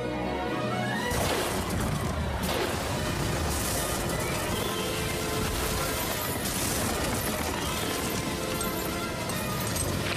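Film score mixed with storm sound effects. After a rising sweep in the first second, a dense rush of rain and sea comes in, with repeated crashes, while the music carries on underneath.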